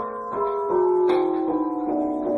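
Piano being played: a tune of separate notes, about three a second, over lower notes that ring on.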